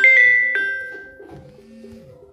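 Background music of chime-like keyboard notes, struck and left to ring. The loudest note comes right at the start and fades over the next second and a half.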